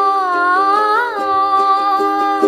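A woman's voice singing one long held note, bending slightly up and back about a second in, over a ukulele strummed steadily at about four strokes a second.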